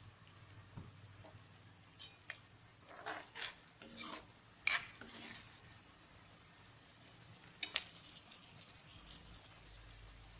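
A steel spoon scraping and clinking against a kadhai as a thick pea masala is stirred while it fries, with a faint sizzle underneath. The strokes come in scattered bursts, mostly in the first half, with one more clink near the end.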